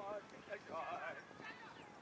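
Faint, distant shouts and calls from players and people across a football pitch, mostly about half a second to a second in.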